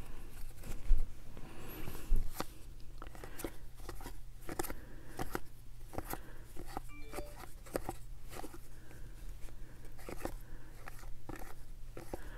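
Baseball cards being flipped one at a time from the front to the back of a stack held in the hands: a continual run of small clicks and slides of card stock. A low steady hum sits underneath.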